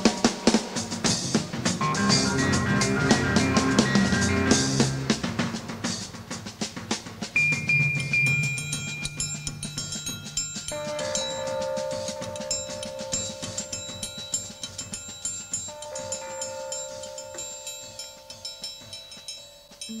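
Jazz fusion band playing live: a drum kit plays busily over bass and keyboard notes, then thins out about six seconds in to long held notes and light cymbal and percussion ticks, getting quieter toward the end.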